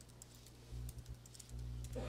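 Faint computer keyboard typing, a few scattered keystrokes, over a low hum.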